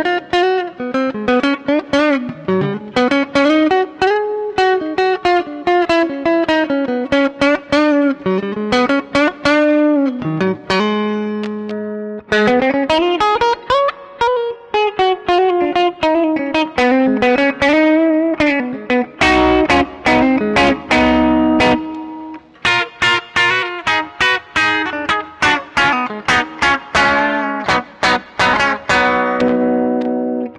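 A 1964 Danelectro Shorthorn electric guitar with lipstick pickups, played clean through a small amp. Quick single-note runs climb and fall with wavering pitch, then about two-thirds of the way in it moves to ringing chords.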